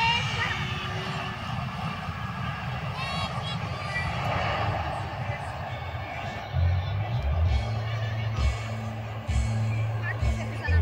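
Jet engines of an Airbus A320 touching down and rolling out on the runway: a steady rushing noise that swells about four to five seconds in. Music with a deep bass comes in over it about six and a half seconds in.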